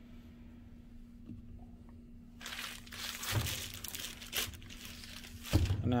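Plastic wrap crinkling as a wrapped block of clay is handled and moved across a table, starting about two seconds in, with a dull thud of the clay block about three seconds in.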